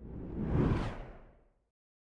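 Whoosh transition sound effect that swells to a peak a little before a second in, then dies away by about a second and a half.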